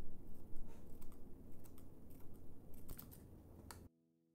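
Kitchen scissors snipping fresh chives, a run of crisp, irregular snips that grow fainter and stop abruptly near the end.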